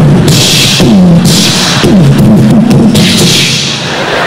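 A man making loud vocal percussion noises into a microphone, imitating the clanging and crashing of a one-man band in a few repeated hissing, crashing bursts with low falling vocal grunts.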